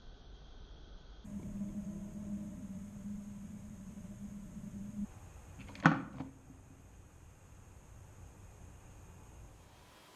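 A homemade 3-inch PVC pipe tilting mouse trap tipping down and its PVC cap door falling shut: one sharp plastic clack about six seconds in, with a brief rattle after, the sign that a mouse has gone to the back and the trap has sprung. A low steady hum runs for a few seconds before it.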